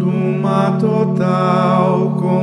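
A hymn of the Liturgy of the Hours sung in Portuguese, a slow melody with a slight waver in pitch, over a steady held accompaniment chord.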